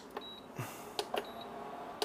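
A few light clicks and small knocks of handling at the bench as a hide glue pot is switched on, with faint short high-pitched tone blips now and then.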